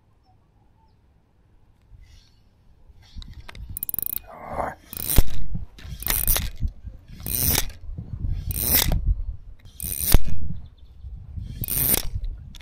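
Spinning fishing reel clicking in short loud bursts, about one every second and a quarter, seven in a row after a near-silent start. The line is snagged and being pulled against, and the leader parts soon after.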